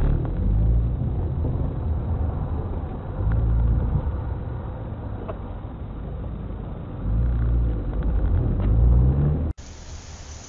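A car engine heard through a dashcam microphone, with a steady low rumble and three runs of rising pitch as it speeds up. About half a second before the end the sound cuts suddenly to a quieter hiss.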